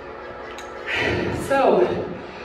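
A voice sounding near the end, its pitch sliding down, after a short sharp snap about half a second in.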